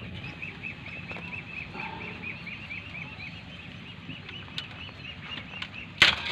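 A bird chirping steadily, about five short calls a second.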